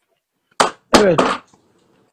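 A short sharp noise a little over half a second in, then a man says "evet" (yes), his word opening with a sharp click.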